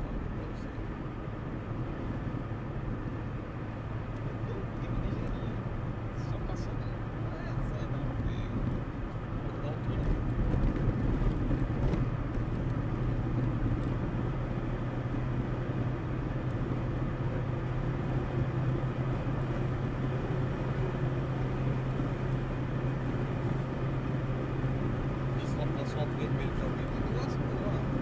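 Car engine and tyre noise heard inside the cabin while driving on an asphalt road: a steady low drone that grows louder about ten seconds in.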